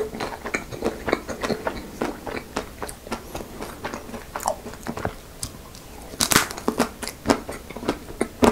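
Close-miked bites into chocolate-coated ice cream bars, the hard chocolate shell cracking and crunching between chews, with the loudest burst of cracking about six seconds in.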